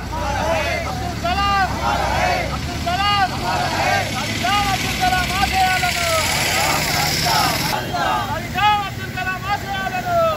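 A group of men shouting slogans together in raised voices, phrase after phrase, with road traffic running underneath.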